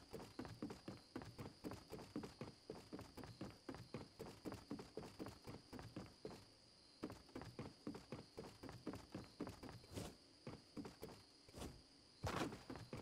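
Faint, quick, evenly paced footsteps, about four a second, with a couple of sharper clicks near the end. A faint steady high whine runs underneath.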